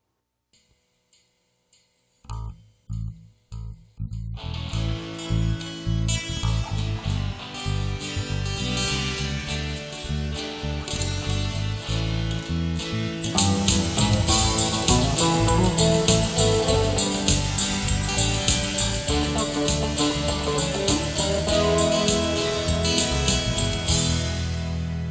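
Solo acoustic guitar playing the introduction to a country song: a couple of seconds of quiet, a few single plucked notes, then steady strumming that grows louder and fuller about halfway through.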